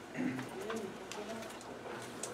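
Low murmured voices with a short coo-like hum, and a few small clicks of handling.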